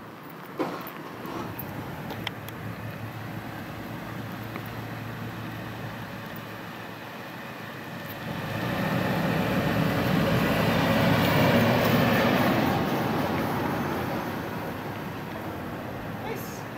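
A vehicle passing by, heard as a rushing noise that swells about halfway through, peaks for a few seconds, then fades away again.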